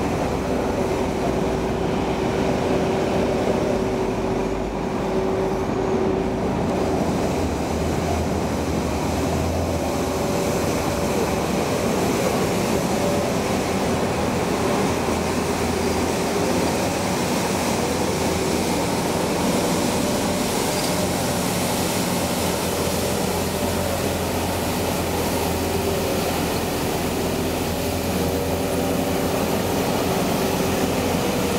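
Compact street sweeper running steadily: a continuous mechanical drone from its engine and sweeping gear, with a steady whine running through it.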